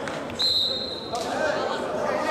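A referee's whistle blows one steady, high-pitched blast of under a second, starting about half a second in and cutting off sharply, over a background of voices.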